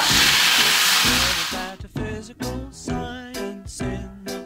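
White wine poured into a hot skillet sizzles loudly as it deglazes the pan, a hiss that cuts off about a second and a half in. Light background music with a bouncy, regular beat then takes over.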